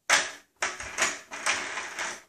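Hard plastic wheels of a child's ride-on toy car rattling and clattering over a wooden floor as it is pushed along, in about five short spurts.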